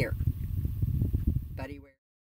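A low, unsteady rumbling noise under a woman's voice, with a brief spoken sound near the end, then an abrupt cut to dead silence.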